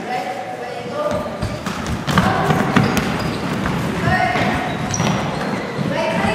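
A Gaelic football thudding and players running on a sports hall's wooden floor, echoing in the hall, with a run of sharp knocks from about one and a half to three seconds in.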